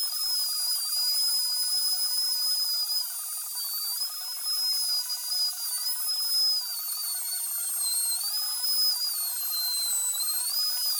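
Handheld trim router running with a high whine whose pitch drops and climbs back several times as the bit loads and unloads while routing letters into a wooden slab, over a steady noise of the bit cutting wood.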